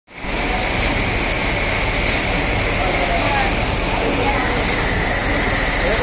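Universal ribbon mixer running, its ribbon agitator churning a batch of whole maize kernels: a loud, steady rushing hiss of tumbling grain over the machine's drive.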